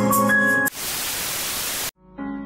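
Music cut off about a third of the way in by a burst of static hiss lasting just over a second, which stops abruptly just before the end.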